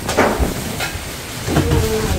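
Steady low rumble and hiss of wind buffeting the microphone during a storm, with a brief indistinct voice about one and a half seconds in.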